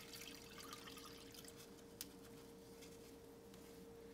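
Faint sound of vinegar being poured from a glass into a zip-lock bag of water, trailing off after the first second, over a steady faint hum, with a single sharp click about two seconds in.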